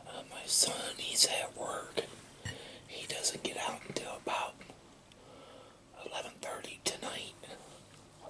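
A man whispering close to the microphone in short broken phrases, pausing for about a second around the middle.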